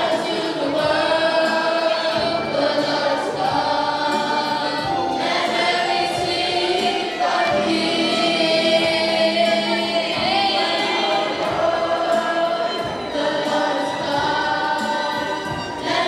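Youth choir singing in harmony, with notes held for a second or two at a time.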